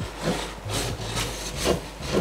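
Wooden spoon scraping and beating a stiff flour-and-water choux dough against a stainless steel pot, in rhythmic strokes about twice a second. The dough is being cooked until the flour lightly sticks and forms a film on the pot base.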